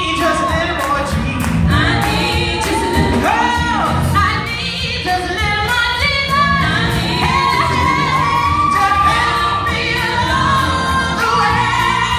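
A woman singing a gospel song live, with long held and gliding notes, accompanied by electric bass and keyboard.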